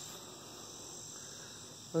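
Insect chorus outdoors in summer: a steady, high-pitched drone.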